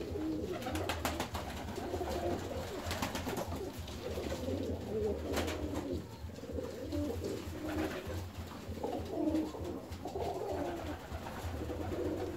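Domestic fancy pigeons cooing, many calls overlapping without a break, with a few short sharp clicks among them and a low steady hum beneath.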